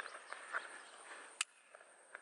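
A single short, sharp click about one and a half seconds in, over quiet outdoor background: a pistol's trigger breaking during dry-fire practice on an unloaded gun.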